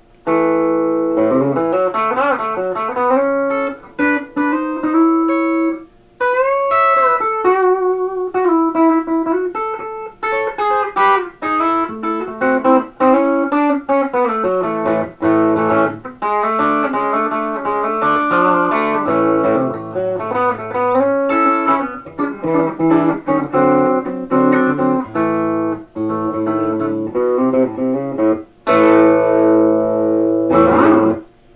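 Peerless ES-345 semi-hollow electric guitar played through an amp with light distortion, Varitone on position one, for a country/rockabilly tone. It plays a lead line of single notes with bent notes, broken by a few short pauses.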